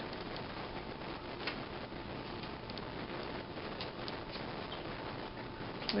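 Steady background hiss with a few faint, soft clicks and rustles from hands handling a doll while measuring around its chest with a tape measure.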